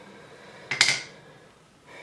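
A pop-up sink drain stopper set down on a hard surface with a single sharp clack a little under a second in.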